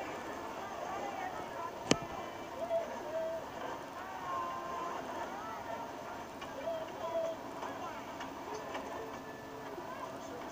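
Faint voices played back through a phone's small speaker, with a single sharp click about two seconds in.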